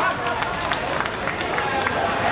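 Indistinct voices of people talking, with several short knocks or taps scattered through.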